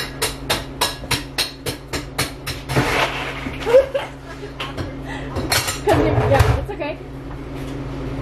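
Drink-making clatter behind a coffee-stand counter: a fast, even run of sharp clicks, about four a second, then a brief hiss about three seconds in and more scattered knocks, over a steady machine hum.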